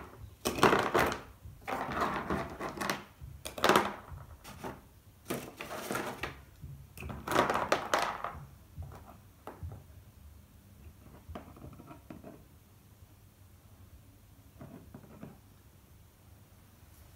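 Props handled on a tabletop: irregular rustles and knocks as a sandy mound and small pebbles are set down around toy figures, busy for the first half, then only a few faint taps.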